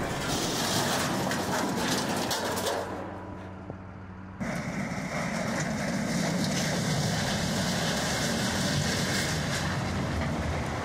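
Heavy machinery engine of an excavator-style grapple material handler running steadily. There is a quieter stretch with a low hum just after three seconds in, and an abrupt change back to the fuller engine noise a little over four seconds in.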